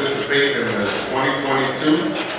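Cutlery and dishes clinking at dining tables, short scattered clinks over voices talking.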